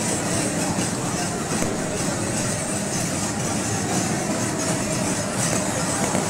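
Steady hubbub of a large festival crowd, a dense mix of many voices with no single words standing out.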